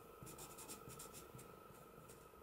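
Felt-tip pen writing on paper: faint, short scratching strokes as letters are drawn.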